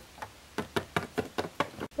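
A quick run of about ten light knocks or taps on a hard surface, roughly six a second, starting about half a second in.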